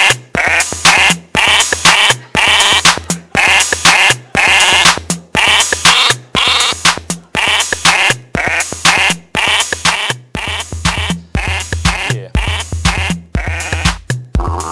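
Computer-generated tune played loudly through the PA: a short sound sample replayed at changing playback speeds, so each note comes at a different pitch, about two notes a second, over a looped TR-808 drum-machine house beat.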